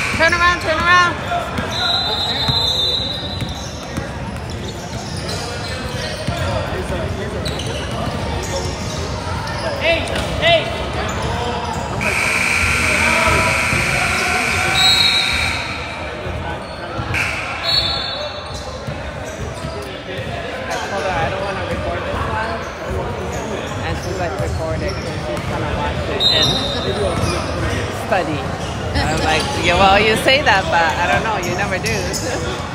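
Basketball bouncing on a hardwood gym floor as players dribble, the bounces echoing in a large hall. Voices from the court and sidelines run underneath, with a few short high-pitched squeaks.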